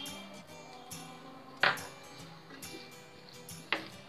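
Soft background music with sustained tones, with two brief sharp sounds from the frying pan, about a second and a half in and again near the end.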